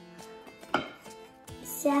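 A wooden spoon knocking against a ceramic casserole dish while spiralized sweet potato noodles are stirred: one sharp knock about a second in and another near the end, over faint background music.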